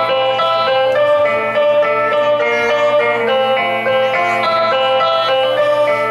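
Live rock band playing a song's instrumental intro: a melody of sustained notes, led by guitar, over the band.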